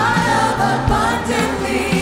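Church worship team singing a contemporary Christian worship song: several amplified voices singing together, a woman's voice leading, over a steady band accompaniment with held low notes.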